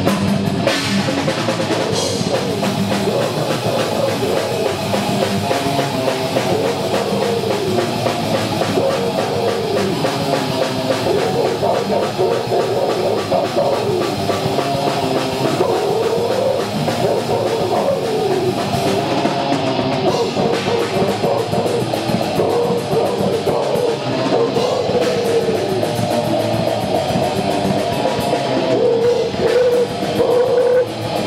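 A death metal band playing live, with distorted electric guitars, bass guitar and drum kit together in one loud, unbroken passage. A winding guitar riff runs throughout.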